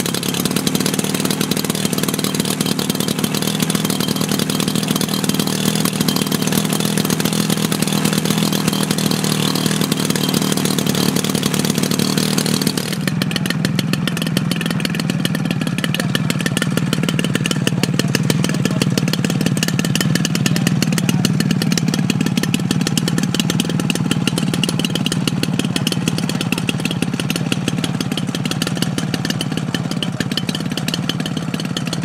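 DA150 twin-cylinder two-stroke petrol engine of a large model aircraft running steadily; about thirteen seconds in its sound changes abruptly and turns duller.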